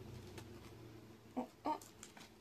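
A woman's voice making two short, pitched vocal sounds about a third of a second apart, with a few faint clicks of eggshell being peeled.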